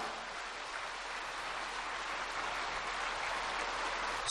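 A large audience applauding steadily, an even patter of many hands.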